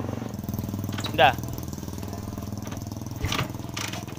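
Small motorcycle engine running steadily at low revs.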